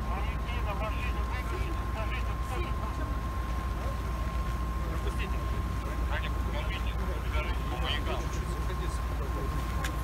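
Steady low rumble of idling vehicle engines, with scattered indistinct voices of a group of people and a constant high whine throughout.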